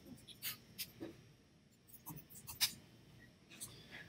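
About six faint, scattered clicks from a computer keyboard and mouse over quiet room tone.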